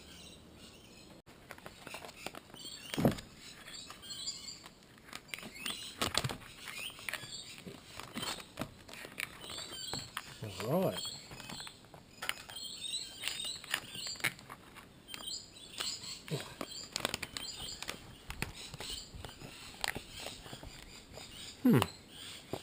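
Thick foil paydirt pouch crinkling and rustling as it is handled, cut open and pulled apart, with scattered small clicks and taps.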